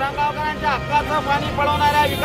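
Men at a sit-in protest shouting slogans, loud raised voices in short, held calls.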